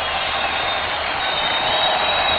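Studio audience applauding: a steady, dense wash of clapping.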